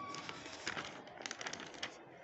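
A sheet of exam paper being handled and turned by hand, giving a run of quick paper crackles and rustles in the second half.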